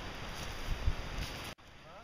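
Rustling handling noise from a handheld camera being swung around, with a few low knocks, cut off abruptly about one and a half seconds in, leaving a quieter outdoor background.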